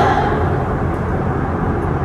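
Steady low rumbling room noise in a gym, with no clear events.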